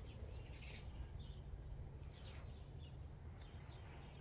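Faint birds chirping in short scattered calls over a low steady outdoor rumble.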